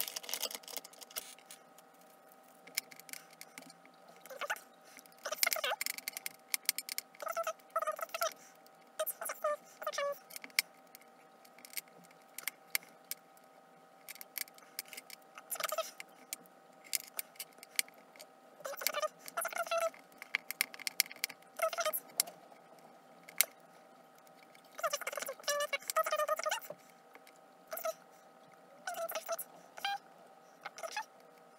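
Hands working polymer clay onto a metal bangle blank on a cutting mat: irregular short bursts of rubbing, tapping and light clinking, with brief pauses between them, over a faint steady hum.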